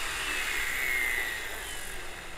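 Helicopter flying past: a steady rotor and engine noise with a high whine that falls slowly in pitch and grows quieter near the end.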